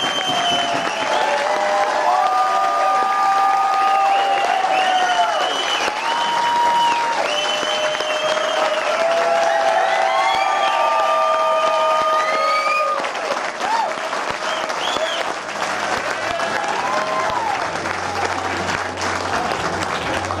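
Concert audience applauding, with cheering voices held and overlapping above the clapping. It eases a little in the second half.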